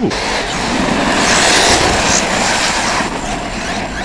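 6S brushless RC trucks being driven hard over rough ground: a steady, loud, noisy rush of motor and tires.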